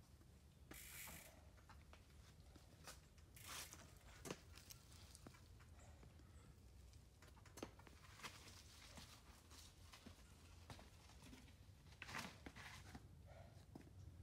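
Near silence: faint outdoor room tone with a low rumble and a few soft, brief scuffs and clicks scattered through.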